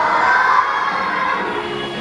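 A group of young children shouting together, fading about half a second in, with background music underneath.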